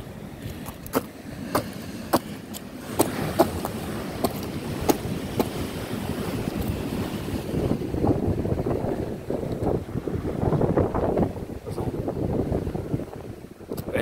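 Wind buffeting the microphone over the wash of surf, with a few sharp clicks and knocks in the first five seconds or so.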